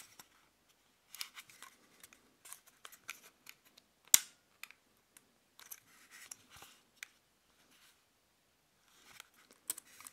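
Fingers and fingernails scraping and clicking on the plastic battery compartment of a handheld mini wireless keyboard while prying at the USB nano receiver in its slot. Scattered small clicks and scrapes, the sharpest click about four seconds in.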